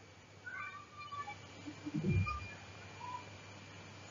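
Faint animal calls in the background: a few short high chirps in the first second or so and a louder, lower call about two seconds in, over a steady low hum.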